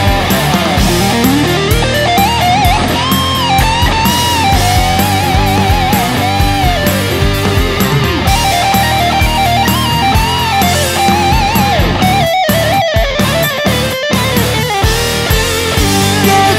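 Instrumental break of a Japanese rock song: a lead electric guitar plays a solo line over bass and drums, sliding up in pitch about a second in and holding notes with vibrato. Near the end the band cuts out in a few short stop-time gaps before coming back in.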